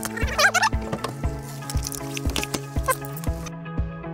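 Background music with a steady beat over sustained bass notes, with a brief warbling, wavering sound near the start.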